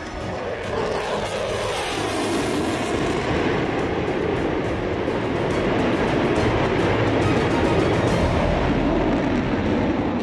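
Jet noise from an F-22 Raptor's twin Pratt & Whitney F119 afterburning turbofans as it flies overhead: a steady, dense rushing sound that grows slightly louder through the pass.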